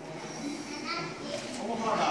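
Spectators, children among them, calling out and shouting in overlapping voices during a grappling match.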